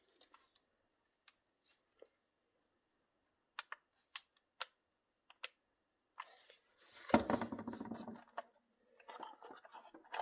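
Handling noise from an RC transmitter and crawler: a few separate sharp plastic clicks, like switches being flipped, then a louder rustling bump about seven seconds in.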